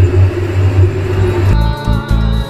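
A loud, steady low rumble with a hum. About three-quarters of the way in it gives way abruptly to background music with a regular beat.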